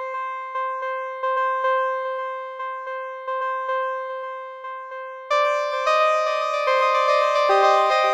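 A single synthesizer note played through an eight-tap delay built in Bitwig's FX Grid, its taps set to different delay times, so the echoes repeat in an uneven rhythm. From about five seconds in, new notes at other pitches join and their echoes pile up into a layered texture.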